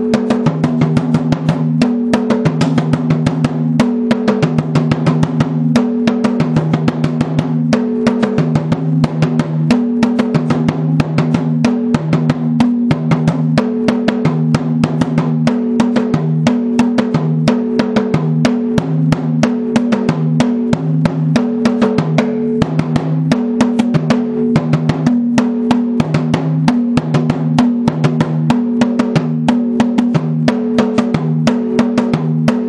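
Dundun bass drums, the small kenkeni and the medium sangban, stood upright and struck with a stick in a fast, steady rhythm of several strokes a second. The drum heads ring out in deep notes that switch between two pitches in a repeating pattern.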